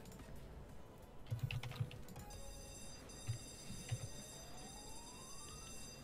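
A few faint clicks at a computer, a cluster in the second second and single ones about three and four seconds in. Under them is the slot game's sound: faint steady high chiming tones, and a tone rising in pitch over about a second and a half as the reels spin.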